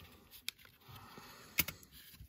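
Plastic pry tool working at the tight seam of an emergency flashlight's plastic case: faint scraping and two sharp plastic clicks, the louder one about one and a half seconds in.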